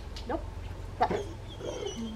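A 5-month-old Rottweiler puppy making three short vocal sounds, the loudest about halfway through, ending in a thin, high whine.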